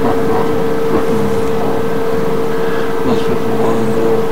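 A loud, steady hum with one constant tone held throughout, over an even background noise.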